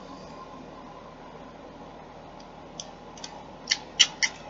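Quiet, steady room hiss, with a few small clicks in the second half, the sharpest near the end, as a plastic spray bottle is handled.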